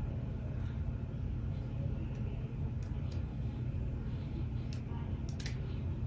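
A steady low rumble, with a few short, crisp snips of scissors cutting a wig's lace, the clearest pair about five seconds in.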